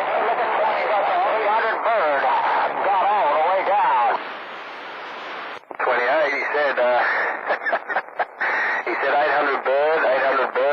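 Distant voices coming in over a mobile two-way radio's speaker, faded and thin over steady static. The signal sinks to hiss about four seconds in. A new transmission then arrives choppy, cutting in and out rapidly as it fades.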